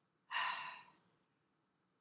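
A woman's breathy sigh: a single exhale about a third of a second in, lasting about half a second and fading out.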